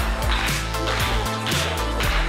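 Music with a steady beat, about two beats a second, over a held, stepping bass line.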